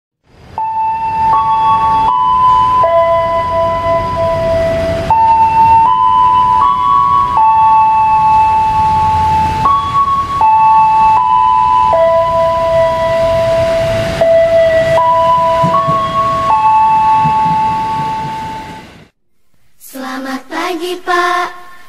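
A simple melody of clear, steady electronic tones, one note at a time, stepping up and down over about two notes a second over a low rumble; it stops suddenly about a second before the end.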